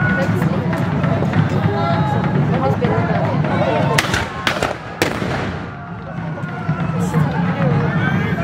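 A ragged volley of black-powder musket shots: four sharp cracks in about a second, about halfway through, the last one echoing away.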